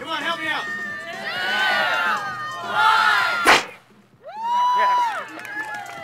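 A group of people shouting together. About three and a half seconds in, a single loud sharp crack comes from a lever-fired PVC-pipe launcher going off. A short hush follows, then a long shriek and more shouting.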